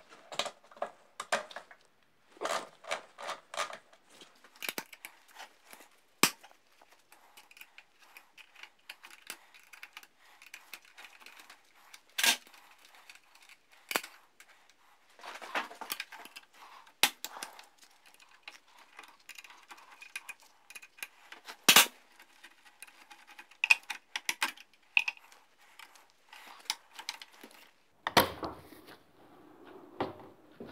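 Hands fitting parts on a motorcycle frame: scattered clicks, knocks and scraping, with a few sharp clacks, the loudest about two-thirds of the way through.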